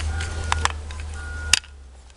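A few sharp clicks and taps of plastic makeup compacts being handled, the loudest about one and a half seconds in, over a low hum that stops with that last click.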